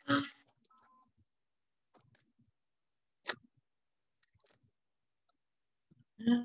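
A short knock right at the start, then a single sharp click about three seconds later, with a few faint ticks between; otherwise quiet.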